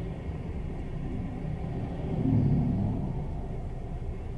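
Low road and engine rumble inside the cabin of a moving Suzuki Lapin kei car, swelling louder for about a second a little past two seconds in.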